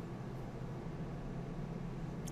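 Steady low hum with a faint even hiss: the background noise of the narration microphone, with no other event.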